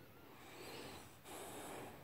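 Small wiry-haired dog breathing audibly through its nose while asleep and dreaming: two faint drawn-out breaths, the second one louder.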